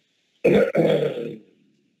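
A person clearing their throat with a short cough, in two quick parts, trailing off after about a second, heard over a video-call line.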